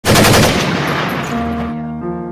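A rapid burst of automatic gunfire, used as an intro sound effect, starting loud and dying away over about a second as held musical notes come in.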